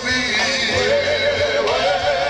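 Live gospel quartet music: a band playing under a high voice that slides and wavers on a held note.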